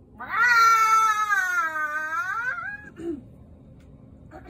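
A woman making a silly, long, high-pitched vocal sound that lasts a little over two seconds, sagging slightly in pitch and rising at the end, followed by a short falling sound about three seconds in.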